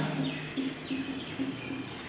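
Whiteboard marker squeaking in a series of short high chirps as a number is written, one squeak per stroke.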